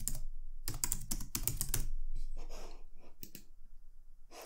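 Typing on a computer keyboard: a quick run of key clicks for about the first two seconds, then a few scattered keystrokes that thin out toward the end.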